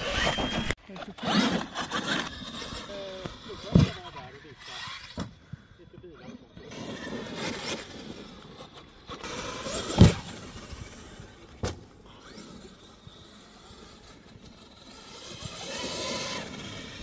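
Electric radio-controlled trucks driving on grass, motors whining and changing pitch with the throttle, with sharp thumps as a truck hits the ramps and lands, the loudest about ten seconds in and another about four seconds in.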